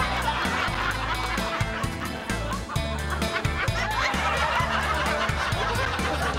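Comic background music with a bouncy bass line, overlaid by a busy run of short, wavering high squawks like cartoon goose honks.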